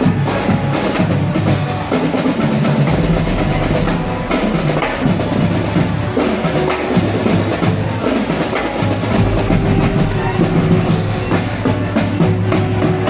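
Marching drum band playing on the street: bass and snare drums beating a steady marching rhythm under held brass notes.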